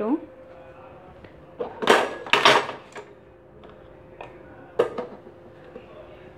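Mustard seeds and urad dal spluttering in hot coconut oil in a steel pressure cooker: a dense run of crackles about two seconds in, then a few single pops.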